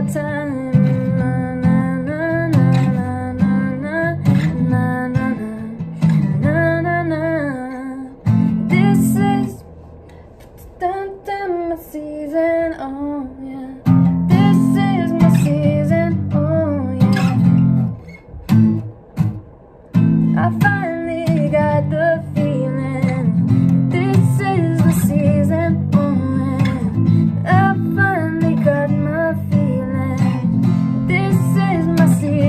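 Taylor acoustic guitar strummed in chords while a woman sings a melody over it. The strumming stops for a few seconds about ten seconds in, and briefly again a little later, then picks back up.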